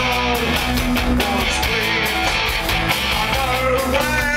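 Live punk rock band playing: distorted electric guitar, bass guitar and drums, loud and steady.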